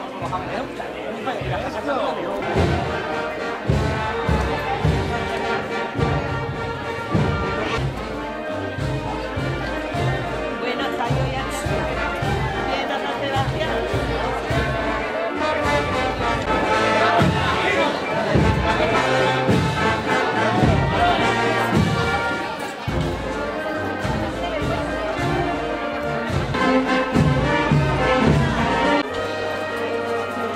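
A brass band playing a slow procession march, with sustained brass chords over drum beats, and crowd chatter mixed in.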